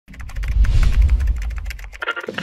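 Fast typing on a laptop keyboard, a quick run of key clicks, over a deep low rumble that swells about half a second in and fades toward the end.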